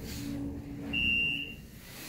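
A 1980s Otis elevator car running with a low steady hum as it arrives at a floor, then a single electronic beep about a second in, lasting under a second: the car's arrival signal.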